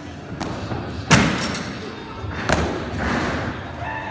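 Thuds of a gymnast's vault on the springboard, vault table and landing mats, the loudest about a second in and another about a second and a half later.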